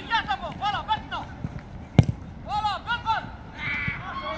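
Players' short, high-pitched calls in quick runs, and one sharp thud of a football being struck about two seconds in, the loudest sound.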